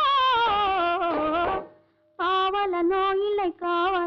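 Old Tamil film song: a woman's voice singing an ornamented melodic line. The voice breaks off for about half a second partway through, then begins the next phrase.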